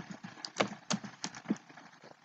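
Computer keyboard keys being typed: a string of short, sharp keystroke clicks, about four or five a second and unevenly spaced, as a word is entered.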